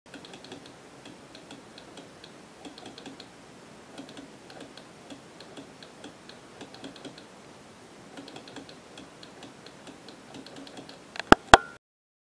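A momentary push-button switch on a homemade LED telegraph, tapped again and again by thumb. Each press and release gives a soft click, in an irregular rhythm. Near the end come two loud clicks and a short beep, then the sound cuts off.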